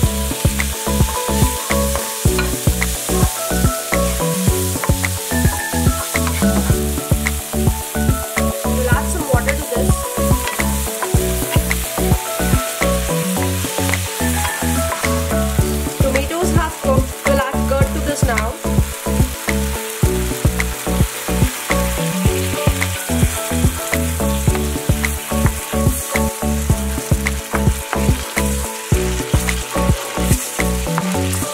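Chopped tomato, onion and spices sizzling in oil in a frying pan, stirred now and then with a wooden spatula, under background music with a steady beat.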